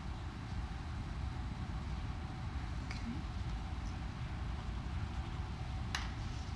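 A steady low rumble of background noise, with a faint click about three seconds in and a sharper click at the end.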